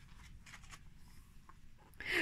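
A page of a paper picture book being turned by hand: a faint paper rustle with a few soft ticks.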